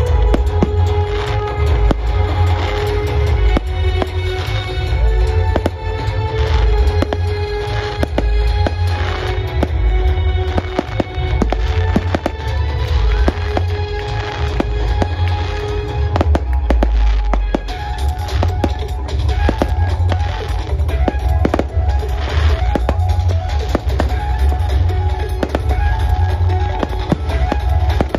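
Aerial fireworks bursting in the sky, a rapid, irregular run of sharp pops and crackles all through, over loud music with a heavy bass line.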